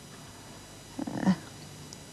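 A short, low 'uh' from a person's voice about a second in, over faint steady hiss.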